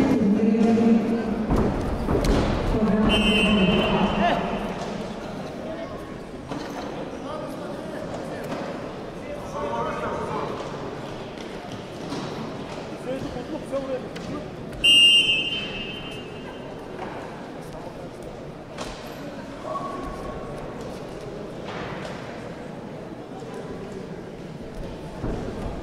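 Shouting voices of coaches and spectators echoing in a large sports hall, loudest in the first four seconds. A referee's whistle sounds briefly about three seconds in, and a louder short blast about fifteen seconds in.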